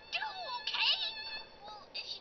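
High-pitched meowing: several short, bending calls, the loudest in the first second.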